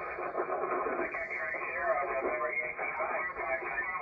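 A distant station's voice received on HF single sideband through the Yaesu FTDX10 transceiver's speaker: narrow, thin-sounding speech with band noise, the other station replying in a contest contact.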